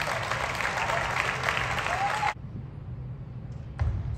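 Audience applauding, with a few cheers, after a table tennis point ends; the applause cuts off abruptly a little over two seconds in. A single sharp tap follows near the end.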